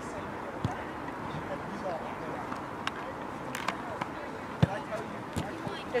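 A football being kicked and bouncing on an artificial grass pitch: a few sharp, separate thuds, the loudest about four and a half seconds in. Faint, distant shouts from players run underneath.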